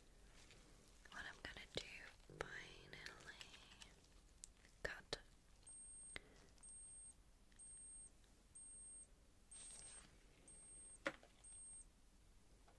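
A woman whispering softly, with a few sharp mouth clicks, in the first half. From about six seconds in, seven short, very high-pitched beeps follow, evenly spaced a little under a second apart.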